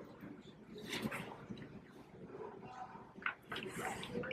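Faint, indistinct background voices with a few sharp clicks and a brief hiss near the end.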